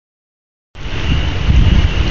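Silent at first, then storm wind buffeting the microphone starts under a second in: a heavy, uneven rumble with a steady hiss over it.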